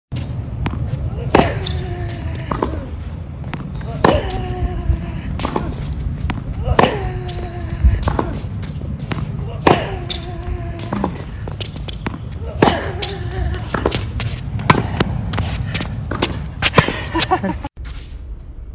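Tennis rally: a sharp racket-on-ball hit about every three seconds, each with a loud grunt that falls in pitch. Quieter ball bounces and returns come in between, over a steady low rumble.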